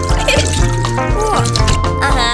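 Cartoon background music with a steady beat, over a sound effect of water running from a tap and filling a watering can.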